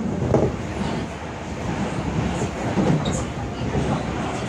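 Seoul Subway Line 2 electric train running at speed, heard from inside the car: a steady rolling rumble with recurring low swells from the wheels on the rails.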